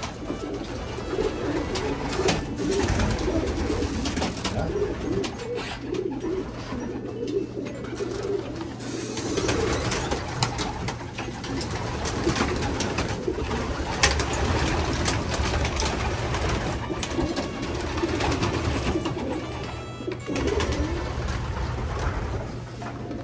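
Racing pigeons cooing, many calls overlapping one another without a break, with scattered sharp clicks and taps and a steady low hum underneath.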